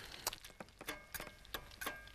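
French toast frying in hot foaming butter: faint, irregular crackles and pops of the butter spitting in the pan.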